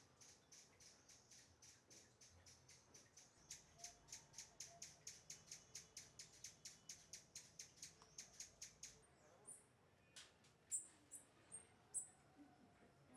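Rufous-tailed hummingbird calling: a long, even series of thin, high chips, about four a second, growing louder a few seconds in and stopping about nine seconds in. A few sharper, higher chips follow near the end.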